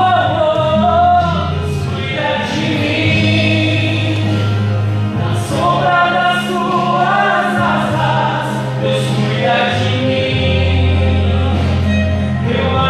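A man singing a gospel song into a handheld microphone over an amplified accompaniment of long held low bass notes. The voice comes in phrases of a few seconds each.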